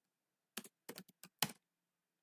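Computer keyboard typing: a quick run of about seven keystrokes, starting about half a second in and stopping about a second later.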